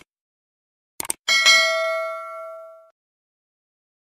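Subscribe-button animation sound effect: two quick mouse clicks about a second in, then a bright notification bell ding that rings and fades out over about a second and a half.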